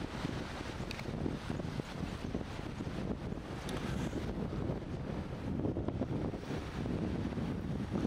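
Wind buffeting the camera's microphone in gusts, over a low rush of small waves breaking on a sandy lake shore.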